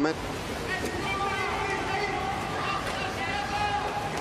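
Steady hubbub of spectators in an indoor pool arena: many voices and calls overlapping at an even level.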